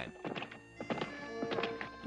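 Cartoon horse hoofbeats, a run of clip-clop clicks from a galloping horse, over soft background music with a held note in the second half.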